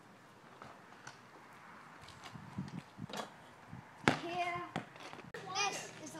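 Faint knocks, then a child's voice calling out loudly about four seconds in and again near the end.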